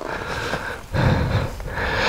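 A person breathing hard close to the microphone: about three heavy, noisy breaths.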